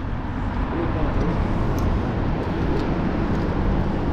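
Steady road traffic noise from the street, a continuous low rumble and hiss.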